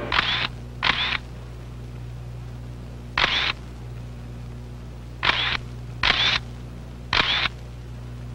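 Camera shutter clicks, six short snaps at uneven gaps, over a steady low hum.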